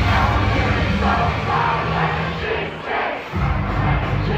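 Loud dance music with a heavy bass line, and a crowd shouting and singing along over it. The bass drops out briefly around three seconds in, then comes back.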